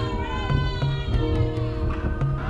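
Opening theme music of a television programme's title sequence: steady held bass notes and chords with sharp percussive clicks, and a high sliding tone that falls in pitch in the first half-second.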